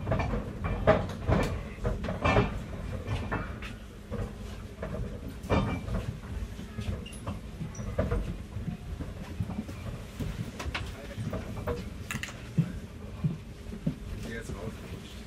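Binaural recording from inside a moving underground train: a steady low rumble from the carriage, with irregular knocks and clicks, most frequent in the first few seconds.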